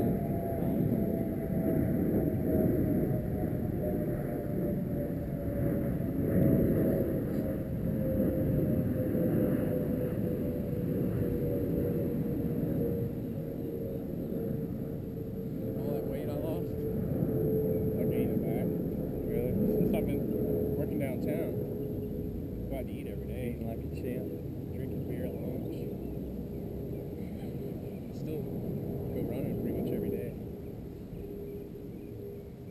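A motor's steady drone, one tone that sinks slowly in pitch throughout, over a low rumble.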